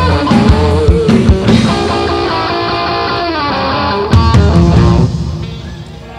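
Live rock band with drums, bass and electric guitar playing the last bars of a song. A steady beat gives way to held chords with a guitar line sliding down, then a final hit about four seconds in that rings out and fades.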